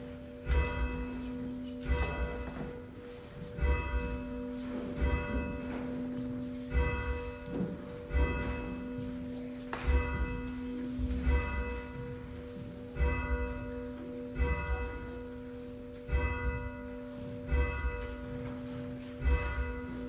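Church bell tolling, about thirteen strokes, one every second and a half or so, its hum ringing on between strokes.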